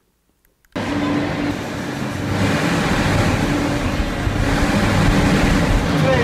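Loud, dense ambient noise of an interactive installation space, with a steady low hum, cutting in suddenly about a second in.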